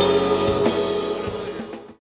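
Live gospel band music: a held chord with a few drum and cymbal hits, fading out at the very end.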